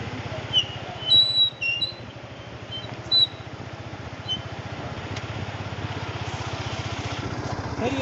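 Yamaha FZ motorcycle's single-cylinder engine running steadily at low revs with an even beat. Several short high-pitched chirps sound over it in the first few seconds, the loudest about a second in.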